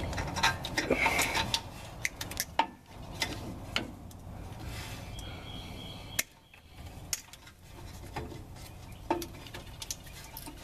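Hands working on small wiring and tools close to the microphone: a string of irregular sharp clicks and taps with rubbing and rustling between them, busiest in the first few seconds.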